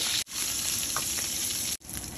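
Spiced chicken fat and juices sizzling steadily in a hot frying pan. The sizzle drops out twice, briefly, about a quarter second in and near the end.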